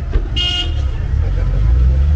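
Road traffic: a steady low vehicle rumble that grows louder toward the end, with a short, high vehicle-horn toot about half a second in.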